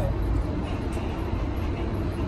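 Steady low rumble of outdoor city background noise, with no distinct event.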